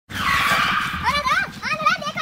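A motorcycle's tyre skidding as it pulls up and stops, a loud hiss lasting about a second. A person's voice follows.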